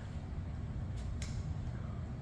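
Low, steady background room noise, with two faint clicks close together about a second in.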